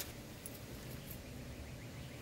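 Quiet room tone: a faint, steady hiss with no distinct event, apart from a small click right at the start.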